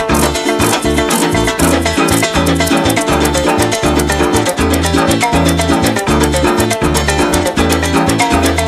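A Venezuelan llanero ensemble playing an instrumental passage: a llanero harp and cuatro plucking quick runs and chords over a steady, pulsing bass line, with maracas shaking.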